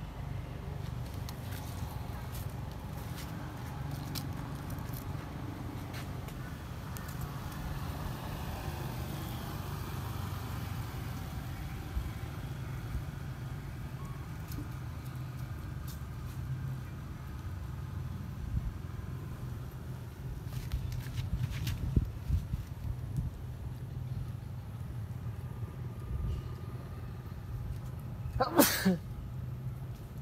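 A steady low hum, like an engine running, under faint distant voices, with scattered small clicks and knocks. Near the end comes one short, shrill squeal that sweeps down in pitch.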